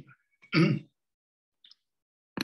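A man clearing his throat once, short and loud, about half a second in.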